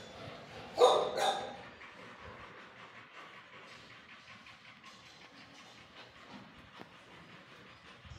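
A dog barks twice in quick succession, the two barks about half a second apart.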